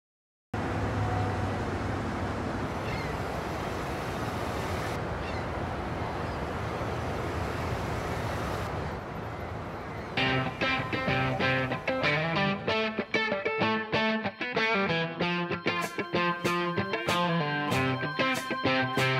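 A steady rush of a car driving, wind and road noise with a low hum. About ten seconds in, a guitar starts picking the song's intro riff.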